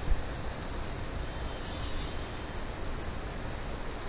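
Steady low hum with a faint hiss: background room noise with no distinct events.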